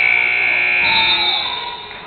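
A loud, steady, high-pitched signal tone held for about a second and a half, with a second, higher tone joining partway through, as used to stop play in a gym basketball game.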